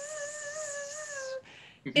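A woman imitating a mosquito's whine with her voice: one steady, high hum with a slight waver, stopping about one and a half seconds in.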